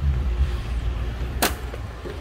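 Low wind rumble on the microphone of a handheld camera outdoors, with a single sharp click about one and a half seconds in.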